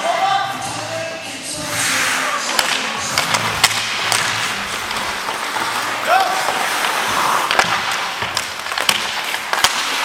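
Ice hockey play up close on the ice: skate blades scraping and carving, with a long scrape about two seconds in, and many sharp clicks and knocks of sticks and puck. Short shouted calls from players cut through, one about six seconds in.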